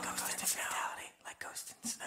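The last chord of a live rock song dying away, under a voice speaking quietly, almost whispering, in short broken phrases.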